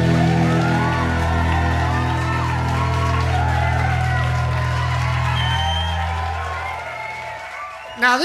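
A rock band's final chord ringing out, its low held notes slowly fading away over about seven seconds. A few cheers and whoops rise over it.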